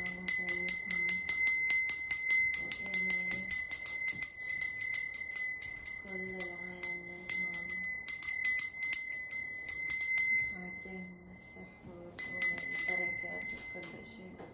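A small metal bell rung rapidly, several strikes a second, in bursts. The ringing pauses briefly twice and ends with a short final burst.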